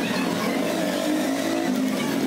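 A steady, slightly wavering engine hum from a motor vehicle running nearby.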